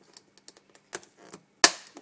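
Thin clear plastic clamshell container being pressed shut by hand: a few small crackling clicks, then one loud sharp snap near the end as the lid catches.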